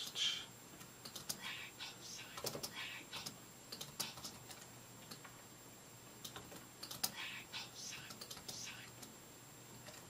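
Computer keyboard taps and mouse clicks, scattered and irregular, as a vocal recording is edited. Between them come soft whispery hisses, the loudest just after the start.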